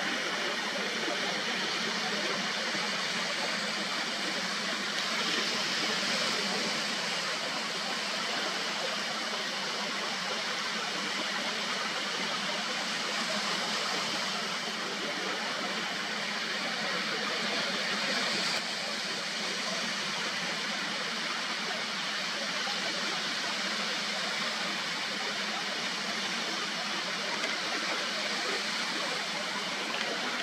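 Ocean surf washing onto a sandy beach: a steady rushing hiss of small waves breaking along the shore.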